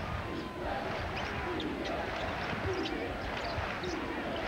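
A basketball being dribbled on a hardwood court, with steady arena crowd noise.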